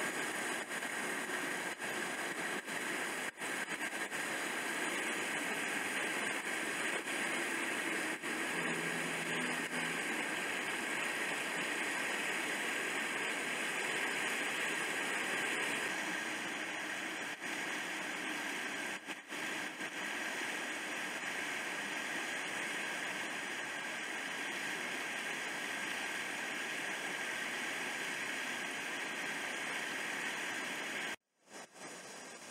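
River rapids rushing over rocks: a steady hiss of white water.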